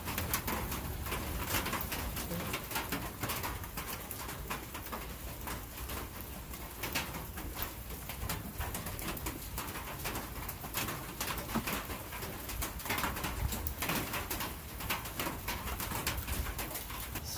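A brush dabbing and scraping bead sealer around the bead of a tire on its wheel rim, making a run of soft, irregular clicks and scrapes over a low background rumble.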